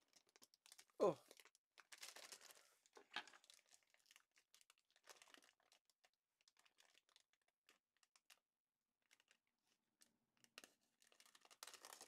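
Faint crinkling and rustling of a plastic bag of model-kit parts being handled and pulled open. It comes in scattered bursts over the first five seconds or so, goes almost silent, then rustles again briefly near the end.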